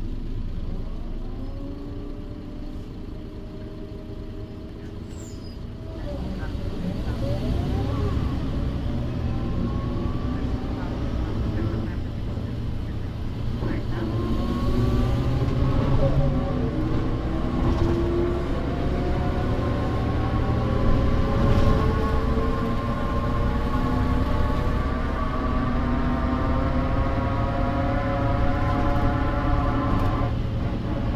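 Mercedes-Benz O405 city bus heard from inside the cabin over a wheel arch: the OM447h diesel and ZF 5HP500 automatic gearbox get louder about six seconds in as the bus pulls away. Several whining tones from the gearbox and rear axle climb slowly in pitch as the bus gains speed.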